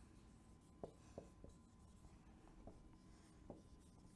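Marker writing on a whiteboard: a few faint, short, irregularly spaced strokes as letters are written.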